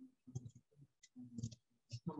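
Faint, scattered clicks and light scrapes of a spatula working enchiladas on a flat griddle.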